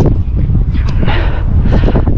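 Wind buffeting the microphone of a body-worn GoPro as the wearer runs: a loud, steady rumble.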